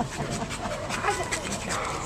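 Pit bull panting with her mouth wide open, hot from play on a warm day.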